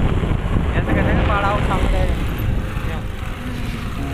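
Loud, steady rumble of wind on the microphone mixed with vehicle noise from riding along a road, with a faint voice about a second and a half in.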